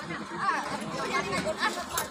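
A group of women chattering, several voices talking over one another, with a few short sharp knocks among them.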